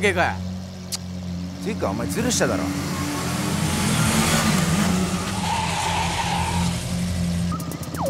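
A car sweeping by with a rush of tyre and engine noise that swells to a peak about halfway through and then fades, with tyres squealing near its height, over a low steady drone. Brief voice fragments come in the first couple of seconds.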